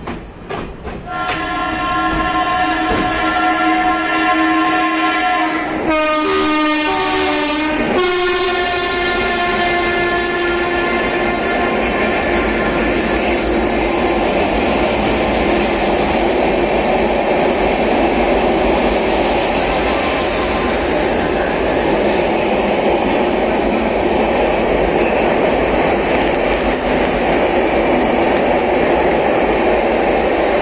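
Indian Railways WAP-7 electric locomotive horn sounding a long steady multi-note blast, with a louder, harsher blast for about two seconds midway, fading out after about twelve seconds. Then the steady noise of a train running through the station.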